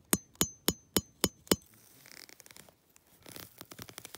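A metal tent peg being struck into the ground: six quick ringing strikes about three a second. This is followed by scraping and rustling in dry grass as the peg is worked in.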